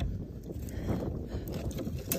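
Low, steady rumble of wind on the microphone, with no shot or voice in it.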